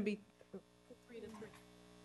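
Steady electrical mains hum picked up by the meeting-room microphone system during a pause in the talk, with faint voices murmuring in the background about a second in.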